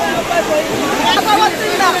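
Floodwater rushing in a steady, loud roar, with voices talking over it.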